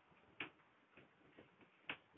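A whiteboard duster knocking and tapping against the board while it is wiped: a sharp tap about half a second in, a louder one near the end, and a couple of fainter ticks between, over near silence.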